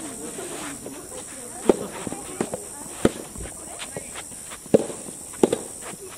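A soft tennis rally: rackets hitting the soft rubber ball and the ball bouncing on the court make several sharp pops a second or so apart. The loudest pop comes just before the end, followed closely by another.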